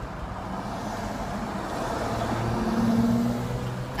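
Car cabin noise while driving: steady road and engine noise that grows gradually louder. A steady low hum joins it about two and a half seconds in, for about a second.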